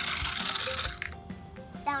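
Toy die-cast car rolling down a plastic race-track ramp, a rattling roll that lasts about a second and then stops. Music plays along under it.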